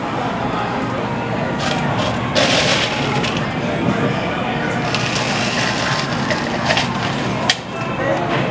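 Drink-making clatter at a coffee counter: sharp clicks and knocks of cups and equipment, with a loud rushing burst lasting about a second, starting about two and a half seconds in, over steady background noise and voices.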